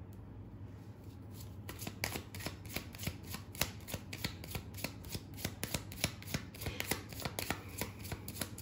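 A deck of tarot cards shuffled by hand: a quiet start, then a quick, irregular run of soft card flicks and clicks from about two seconds in.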